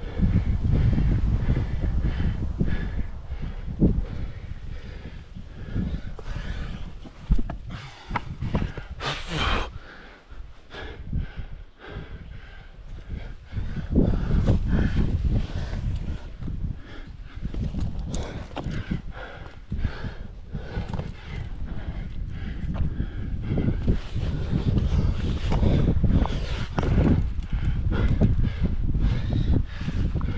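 Rubbing, scraping and irregular knocks and clicks from a climber's hands, shoes and gear against the granite, picked up by a helmet-mounted camera, over a low rumble that rises and falls. The sound is quieter for a couple of seconds about a third of the way in.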